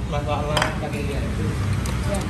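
Spoons and forks clinking against plastic plates during a meal, a couple of sharp clinks standing out, over background talk.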